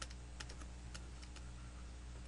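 Faint, irregular clicks and taps of a digital pen on a writing tablet as words are handwritten, about seven in two seconds. A low steady electrical hum sits underneath.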